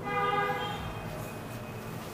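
A steady horn-like tone of several pitches sounding together, fading away over about a second and a half.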